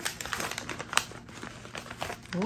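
Small scattered clicks and taps of objects and packaging being handled, with one sharper tick about a second in.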